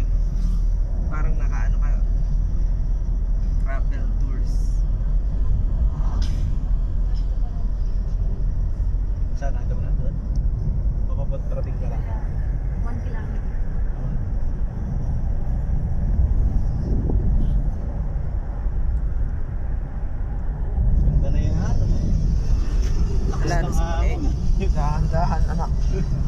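Steady low rumble of a moving vehicle heard from inside the cabin, with voices talking now and then, most clearly near the end.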